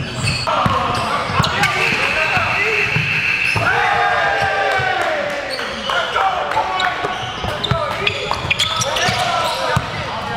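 A basketball bouncing on a hardwood gym floor, with repeated low thumps, under players' excited shouts, whoops and laughter echoing in a large hall.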